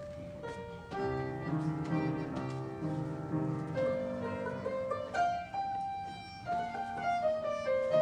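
A folk ensemble of fiddles, cellos and piano playing a tune together, a melody of short notes over chords.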